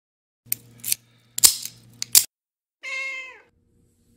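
Domestic cat sounds: about two seconds of harsh, noisy bursts, then one short meow that falls in pitch.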